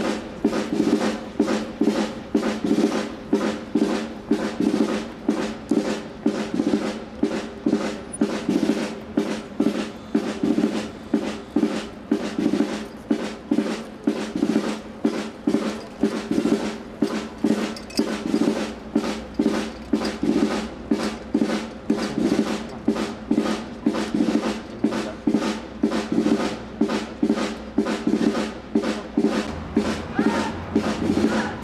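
Military march music led by drums, snare drum prominent, keeping a steady marching beat of about two strokes a second.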